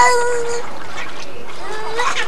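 A young child's high-pitched vocal cry, held about half a second at the start, then a shorter rising call near the end, over water splashing in a backyard paddling pool.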